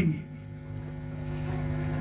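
Steady low electrical hum from the amplified microphone and sound system, several even tones held without change.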